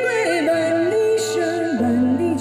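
A woman singing a song into a microphone over instrumental backing music, with a sustained melody line and a cymbal-like splash about halfway through.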